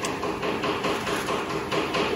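Chicken pieces sizzling in a frying pan, a steady dense crackle.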